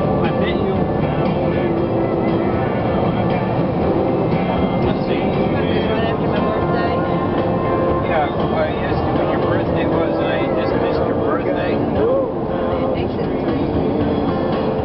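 Country music with a singing voice playing on a car radio, over steady road and engine noise inside a moving car.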